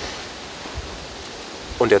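Steady, even rushing background noise in a forest, with no distinct events. A man's voice starts just before the end.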